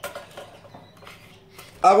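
Thin metal wire and a red plastic bird cage being handled while the wire is pulled taut: a few light clicks and rattles in the first half second, then quieter fiddling.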